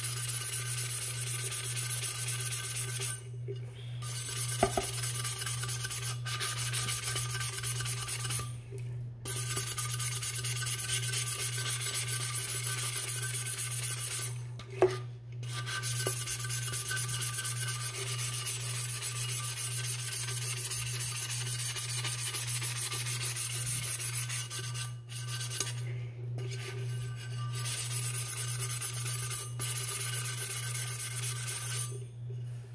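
Sanding block scrubbed back and forth over a stainless steel tumbler, a steady scratchy rasp broken by a few brief pauses. The sanding roughs up the metal so paint and resin will adhere.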